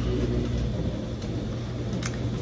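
A steady low hum with a faint even hiss above it: steady background noise, with no distinct events.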